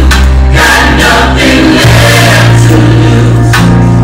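Gospel song with a choir singing over deep held bass notes, played loud.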